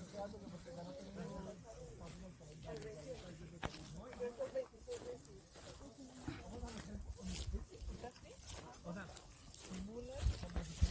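Faint, indistinct talking from a group of hikers, with scattered footsteps on a dry grassy dirt trail and one sharp click a little before the middle.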